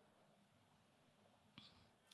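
Near silence: a pause in a speaker's talk, with only faint hiss and one brief faint click about one and a half seconds in.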